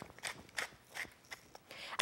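Wooden pepper mill twisted by hand, grinding pepper with a few faint, irregular clicks.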